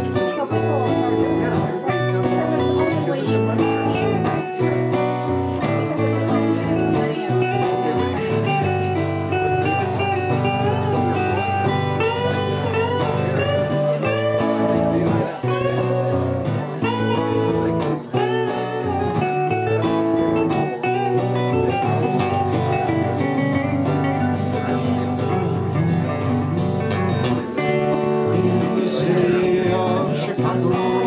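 Live Celtic folk band playing, with a hollow-body electric guitar and an acoustic guitar.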